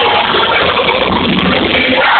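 Live rock band with electric guitar, drums and keyboard playing loud and dense, with no clear singing.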